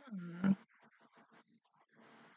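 A woman's short closed-mouth hum or grunt, about half a second long, falling slightly in pitch and ending with a brief louder push.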